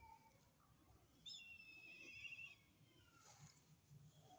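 A bird call: one high, wavering whistle, about a second and a half long, beginning about a second in, faint over low background noise.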